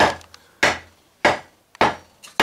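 Mallet blows on the end of a new wooden axe handle, driving it down into the eye of an axe head held in a vise: four strikes, one about every 0.6 seconds. The handle is slowly going in.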